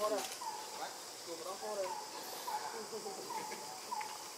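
Macaque mother and nursing infant giving short, soft squeaky calls, several a second, each rising and then falling in pitch. A steady high insect buzz runs underneath.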